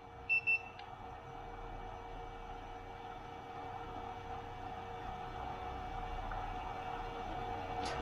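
Handheld infrared thermometer beeping twice in quick succession as its trigger is pressed, over a steady machine hum.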